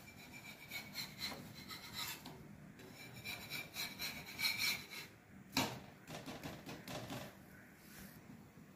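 Steel spatula scraping and sliding under a paratha on a hot iron tawa: a series of short metal-on-metal scrapes with a faint ringing, the sharpest scrape a little past halfway.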